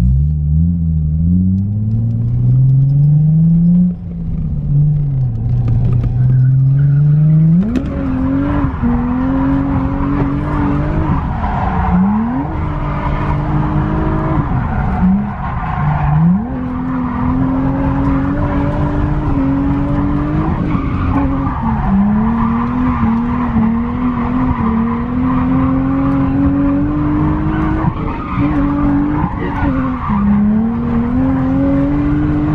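A drift car's engine revving hard in a parking lot: it climbs and falls for the first few seconds, then about 7 s in jumps to high revs and is held there, with several sharp dips and recoveries, while the tyres skid and squeal.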